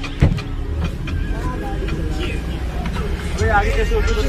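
Inside a car's cabin, the engine idles with a steady low rumble. A sharp thump comes about a quarter second in, and muffled voices come and go.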